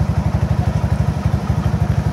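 Small motorcycle engine idling steadily, a low even pulsing of about a dozen beats a second.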